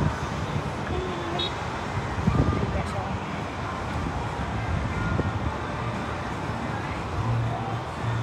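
Muffled, indistinct voices over a steady outdoor rush of wind and street traffic, with a brief louder low rumble about two seconds in.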